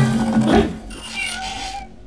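A cartoon cat's yowling cry, loudest in the first half second and then trailing off into a fainter drawn-out wail.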